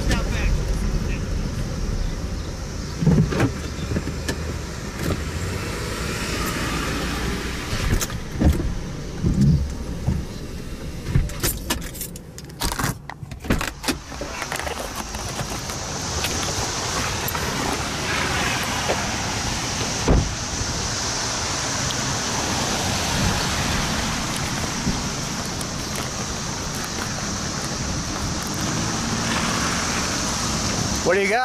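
A car driving, heard from inside the cabin as a steady low road rumble. About twelve seconds in, a run of sharp clicks and knocks from the camera being handled. Then a steady outdoor noise with a high hiss.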